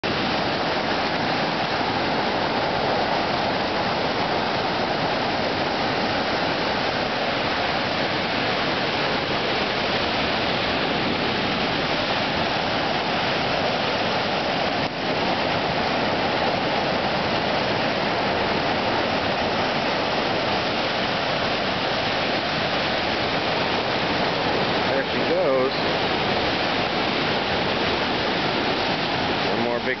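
Steady, loud rush of whitewater from a river rapid pouring over a ledge into a big hydraulic hole, the river running high at about 1200 cfs.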